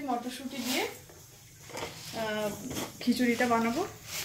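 A woman speaking in short phrases, with a pause of about a second in the middle.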